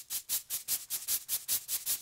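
Rapid, even strokes of a small whisk broom sweeping loose fluff into a dustpan, about five strokes a second, as a cartoon sound effect.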